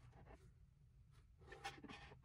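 Near silence, with faint brief rubbing and tapping from a 3D-printed plastic rotor holder being handled, a little more of it near the end.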